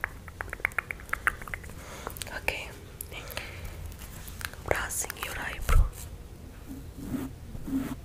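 Close-miked ASMR whispering and mouth sounds: a quick run of sharp clicks in the first second and a half, then breathy whispers. A loud thump about six seconds in, and soft rhythmic puffs about twice a second near the end.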